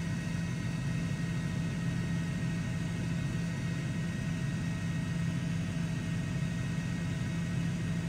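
Steady low hum and hiss on a fire radio channel between transmissions, with no voice.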